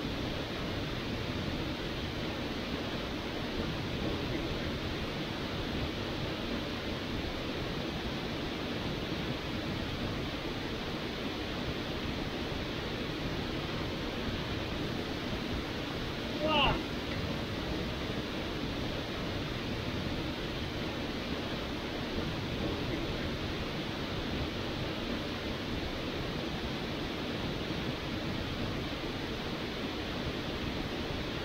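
Waterfall pouring into a plunge pool: a steady, even rush of falling water. About halfway through, a short rising cry stands out above it.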